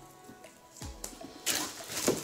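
Quiet background music, with a short burst of plastic shrink-wrap rustling as the wrapped game box is handled about one and a half seconds in.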